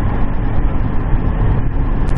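Steady road and engine noise heard inside a pickup truck's cab while driving on a highway.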